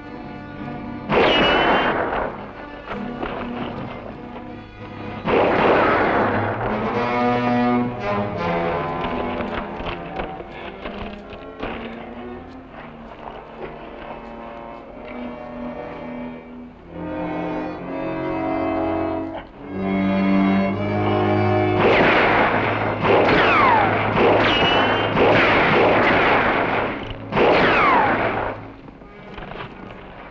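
Movie gunfight soundtrack: about six revolver gunshots, clustered near the start and again near the end, several trailing a falling ricochet whine, over a dramatic orchestral score that carries the quieter middle stretch.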